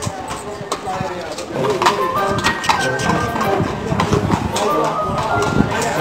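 Music with people talking over it and many sharp clicks.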